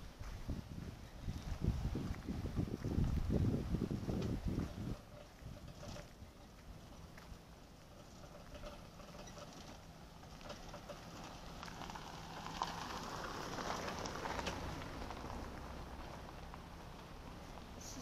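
Wind buffeting the phone's microphone outdoors on a breezy coast, with rumbling gusts loudest for the first five seconds, then a quieter steady rush with a faint low hum and a swell of rushing noise a little past the middle.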